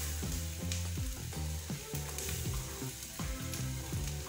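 Butter-and-flour roux sizzling in a saucepan as cold milk is poured in, with many small crackles through the hiss; the sizzling means the heat is too high.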